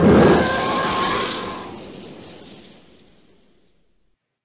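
The TIE fighter engine sound effect flying past: a pitched roar, built from a slowed-down elephant roar, over the rushing hiss of tires on wet pavement. It is loudest at the start and fades away over about three and a half seconds.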